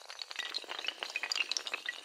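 A long chain of dominoes toppling: a dense, rapid clatter of many small hard clicks.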